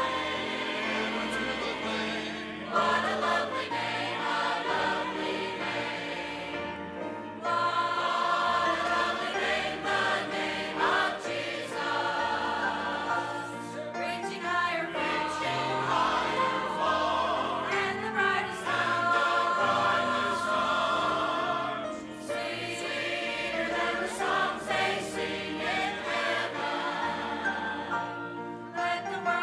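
Church choir singing a hymn, with held low notes beneath the voices.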